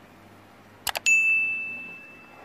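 Subscribe-button animation sound effect: two quick mouse clicks about a second in, then a bright notification-bell ding that rings and fades away over about a second.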